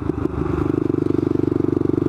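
Motorcycle engine running at a steady cruising speed, heard from a camera on the bike, with a steady low engine note and a fast, even pulse of the firing strokes.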